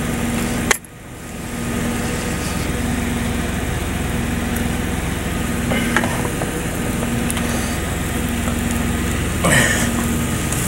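Steady low hum and hiss of an idling truck engine, with a single sharp click about a second in.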